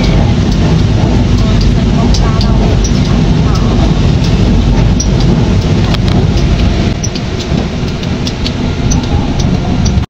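Interior noise of a moving Tze-Chiang express train heard from a passenger seat: a loud, steady low rumble with scattered light clicks.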